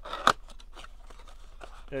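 A cardboard trading-card blaster box being torn open by hand. There is one sharp rip about a quarter second in, then softer cardboard handling noise.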